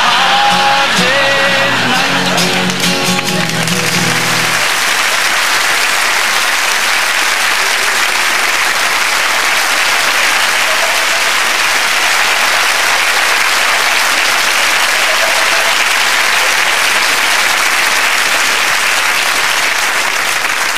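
Studio audience laughing and applauding over the last chords of an acoustic guitar, which ring and stop about four and a half seconds in; the applause then goes on steadily.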